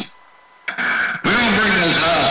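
CB radio exchange: a man's voice stops and there is a short hush. A click and a brief burst of radio sound follow as a station keys up, and a man's voice comes in over the radio just over a second in.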